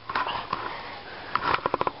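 A boy with his hands over his face making breathy sniffs and gasps, ending in a quick run of short voiced pulses like sobbing or stifled laughter.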